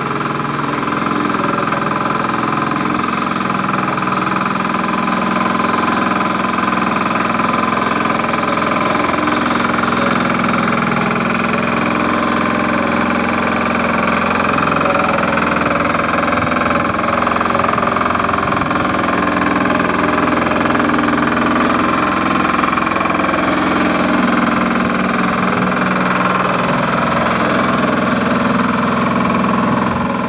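Walk-behind BOMAG double-drum vibratory roller, its small engine running steadily as it is walked along a dirt track to compact it, growing a little louder over the first few seconds.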